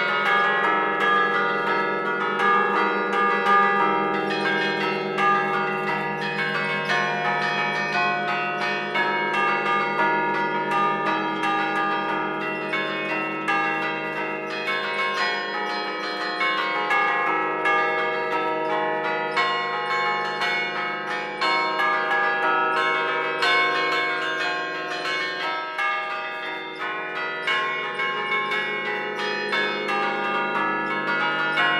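The church tower's bells ringing, heard from inside the belfry: many strikes a second overlap into one continuous peal.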